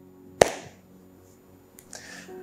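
Soft background music of steady sustained chords, with one sharp tap about half a second in.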